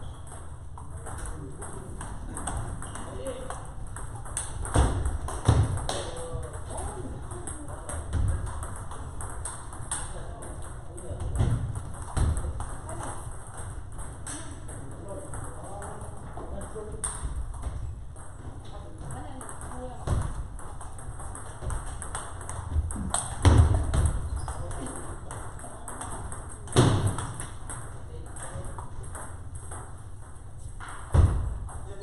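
Table tennis balls clicking off paddles and tables in rallies on several tables at once, with a few louder knocks, over voices in the background.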